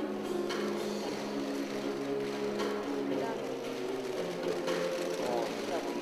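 Rapid clicking of press camera shutters over a steady background of sustained low tones and murmuring voices.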